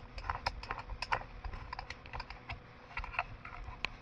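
A run of short, irregular light clicks and taps, several a second, with no steady rhythm.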